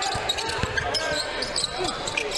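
Basketball dribbled on a hardwood court, a run of bounces over the murmur of the crowd in the gym.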